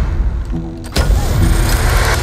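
A sound-designed electronic machine powering up: a deep, steady rumble with a low hum, and a sharp clack about a second in, after which the rumble grows louder.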